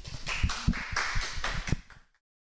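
A small audience clapping, a quick uneven run of hand claps that cuts off abruptly at the end.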